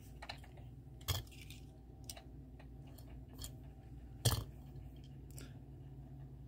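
A few light clicks and taps of small die-cast toy cars being handled and set on a display stand, the loudest about four seconds in, over a low steady hum.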